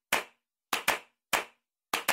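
Handclaps on their own in a steady pattern of a quick pair then a single clap, five claps in all. They are the rhythmic intro of a sped-up pop song.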